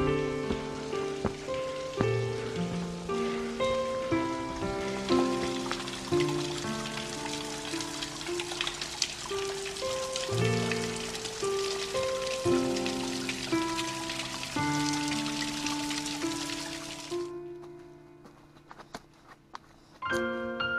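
Trickling, splashing spring water seeping down a wet rock face, heard under soft keyboard background music with a gentle melody. The water sound cuts off suddenly about three-quarters of the way through, and the music dies down near the end, leaving a few faint clicks.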